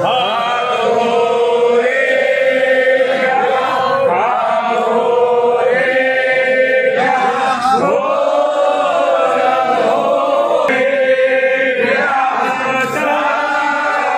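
A group of men chanting a devotional Shiva hymn together in unison for the bhasma aarti, in phrases of a couple of seconds each.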